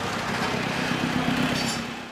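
Busy street traffic: vehicle engines running with a steady low hum under a wash of road noise, fading out at the very end.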